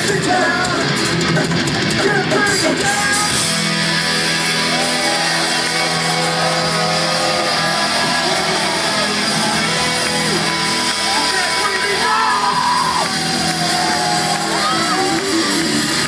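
A live heavy rock band playing loud distorted electric guitars through a PA in a large hall, with yelling and singing voices over the music.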